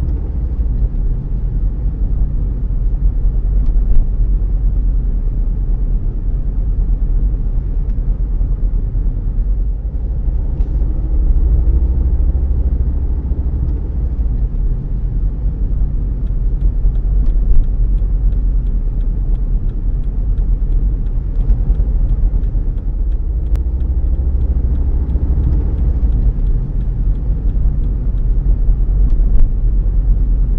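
Car cabin noise while driving: a steady low engine and tyre rumble, with the engine note rising gently three times as the car speeds up.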